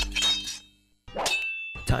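Metallic clang sound effect: a struck, ringing hit that fades out within the first second, then a second strike about a second in with a higher ring.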